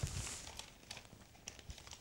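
Faint handling sounds: light rustling with a few small, scattered clicks.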